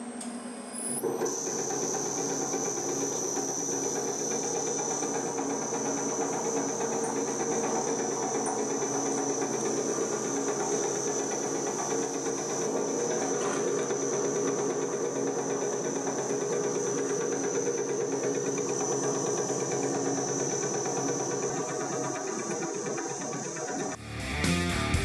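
Electric motor and belt drive of a DIY CNC metal lathe running the spindle at a steady speed under its sheet-metal belt cover. It is a steady high whine over a lower hum and hiss, settling in about a second in.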